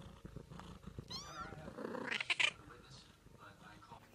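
A young kitten mewing once, a short high-pitched call that rises and falls, about a second in. A little past the middle come a few sharp, noisy scuffs, the loudest sounds here.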